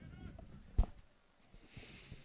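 Low-level outdoor ambience with one sharp knock a little under a second in.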